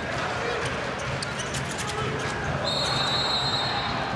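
Handball arena crowd noise with the ball bouncing on the court floor, then a referee's whistle blown and held, starting a little after halfway through.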